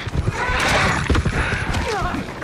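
A monstrous warg snarling and shrieking as it charges and lunges, over heavy repeated thuds of paws and impact; one cry falls in pitch near the end.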